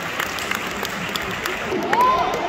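Audience clapping, with many separate hand claps over crowd chatter.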